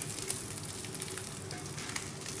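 A hot pan sizzling steadily on the stove, with a few faint clicks.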